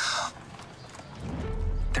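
Horse hooves clip-clopping under a carriage, mixed with dramatic trailer sound design: a short hiss at the start, then a low rumbling drone that swells in near the end.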